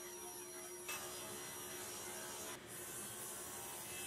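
Table saw running, ripping a red oak board to width, heard as a faint steady hum mixed low.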